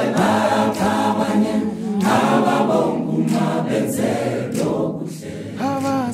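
A choir singing a gospel song, many voices together.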